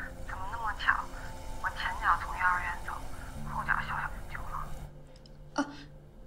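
Speech: a woman talking on a phone call, with faint steady low tones held underneath.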